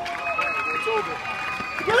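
People yelling and cheering in celebration of a match-winning point: long held shouts, with a louder burst of shouting near the end.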